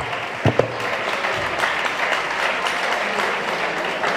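Audience applauding steadily, with a single thump about half a second in.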